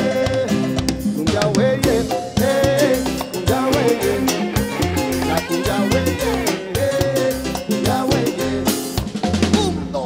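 Live tropical dance band playing an instrumental passage: saxophones and electric guitar over electric bass, drum kit and congas, with a steady Latin dance beat.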